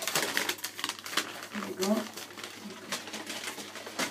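Thin packaging from a hair-dye kit crinkling and rustling as it is handled, a quick run of small irregular crackles.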